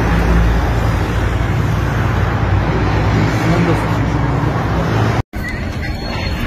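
Loud, steady street noise: a low traffic rumble with faint voices of people nearby. The sound breaks off abruptly for a moment near the end.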